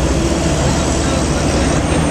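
Loud street traffic noise with a heavy, steady low rumble from vehicles running close by, and faint voices in the mix.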